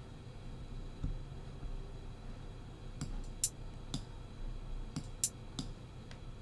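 Computer mouse clicking, a handful of short, sharp clicks in small irregular clusters from about three seconds in, over a quiet room.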